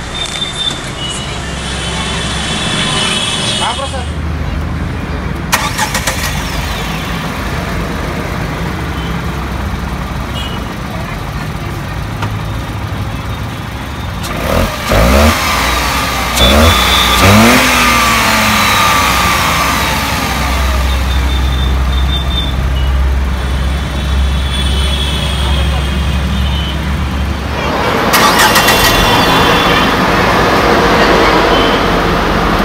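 Tata Tigor's 1.2-litre Revotron three-cylinder petrol engine idling steadily, revved in a few quick blips about halfway through. Near the end it gets louder and noisier.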